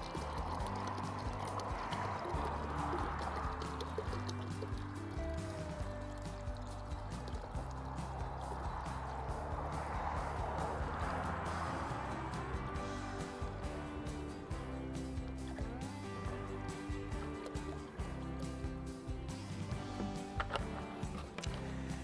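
Background music, with bleach pouring from a plastic gallon jug into a bucket of water in two stretches: one at the start and another around ten seconds in.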